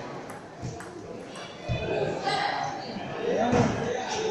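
Table tennis ball being hit, a few sharp irregular pings off the bats and table as a rally gets under way, with voices in the echoing hall.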